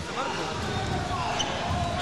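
Steady arena background noise with faint distant voices.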